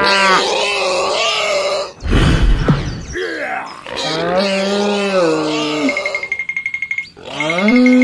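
Dubbed cartoon-style groaning sound effects: two long, drawn-out groans with a short low thud between them about two seconds in. Near the end comes a fast rattle with a steady high beep.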